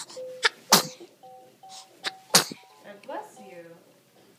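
A baby sneezing twice, two sharp sneezes about a second and a half apart, with a simple electronic tune playing underneath.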